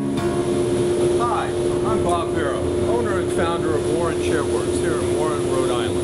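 Steady drone of running shop machinery with one constant hum, under a man talking.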